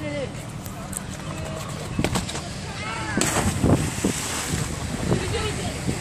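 Voices calling out over wind noise on the microphone, with a few short loud peaks.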